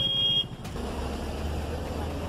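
A short, loud, high-pitched vehicle horn beep, then a vehicle engine running with a low steady drone, over street noise.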